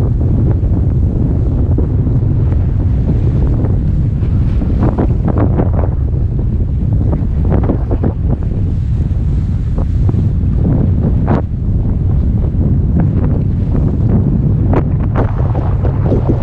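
Strong sea wind buffeting the camera microphone in a steady low rumble, with surf washing and splashing against rocks below in irregular brief surges.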